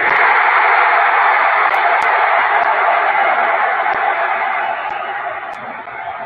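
Football crowd in a stadium bursting into a loud shout all at once, held for about four seconds and then fading: the crowd's reaction to a chance in front of goal that ends as a near miss.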